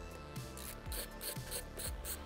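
Background music with a steady beat, about two beats a second, over the faint scraping of a hand screwdriver backing a screw out of the plastic base of an all-in-one PC.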